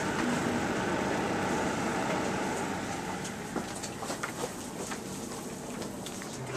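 Bionaire tower humidifier running with a steady fan whoosh that keeps the humidity up, loudest in the first three seconds and then a little fainter, with a few small clicks and knocks in the second half.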